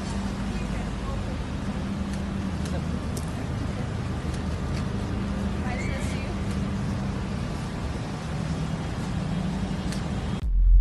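Steady low hum of an idling car engine under a haze of outdoor noise, with indistinct voices and a few faint clicks.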